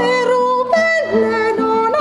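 A woman singing long held notes without clear words, her voice sliding down from one note to the next about halfway through, over a steady instrumental accompaniment.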